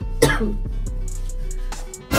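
A person coughing once, about a quarter second in, from the strong hair-bleach fumes, over background music with steady low bass tones.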